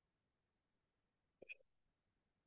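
Near silence, broken about one and a half seconds in by one brief, faint sound of a person's breath catching.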